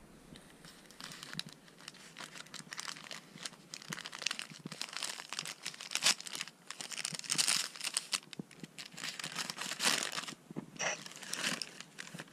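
Paper gift wrap crinkling in irregular crackles as a small wrapped package is handled and opened by hand.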